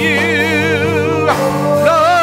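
Live gospel worship singing: held sung notes with vibrato over sustained keyboard chords. The voice breaks off briefly after about a second and a half, then takes up a new held note.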